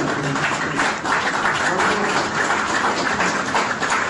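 Audience applauding, a steady dense clapping.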